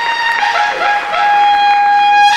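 A trumpet playing a short melodic phrase that settles into one long held high note about a second in.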